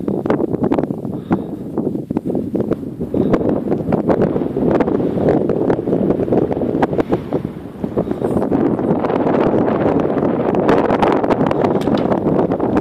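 Strong wind buffeting the microphone in rough gusts, dipping briefly about eight seconds in and then blowing louder and steadier.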